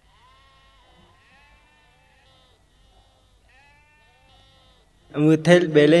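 Faint sheep bleating: several drawn-out bleats of about a second each, one after another, before a man's voice starts speaking near the end.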